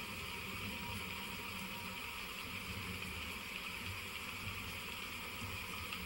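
Steady low hiss and hum of room tone, with no distinct sound event.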